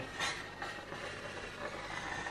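Handheld garment steamer running against a hanging shirt: a steady hiss of steam with a faint high whine, slightly louder just after the start.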